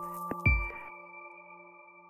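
Closing notes of a short electronic logo jingle. A last deep hit comes about half a second in, then a chord of clear, steady tones rings on and slowly fades, with a low note pulsing softly underneath.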